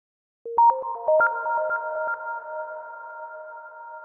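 Short electronic logo jingle: starting about half a second in, a quick flurry of short, bright, plinking notes that then hold as a few ringing tones and slowly fade.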